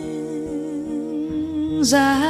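Slow ballad: a woman's voice holds one long note with a slight waver over soft acoustic guitar. A sibilant consonant cuts in near the end as the next sung word begins.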